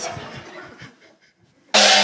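A large hanging gong struck once with a mallet near the end, starting with a sudden bright crash and ringing on with many steady overtones. The strike marks a comedian's set being gonged off as a failure.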